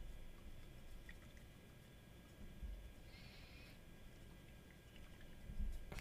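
A small glass bottle of shimmer fountain pen ink being gently shaken by hand, faintly: a few light ticks about a second in and a short liquid swish about three seconds in. The shaking mixes the settled shimmer particles back into the ink.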